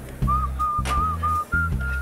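A man whistling a tune through his lips in short, clear notes, the last few pitched higher than the first, over background music with a pulsing bass.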